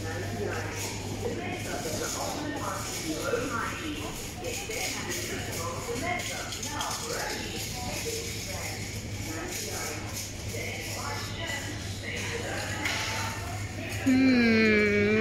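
Supermarket ambience: a steady low hum under faint, indistinct chatter of other shoppers.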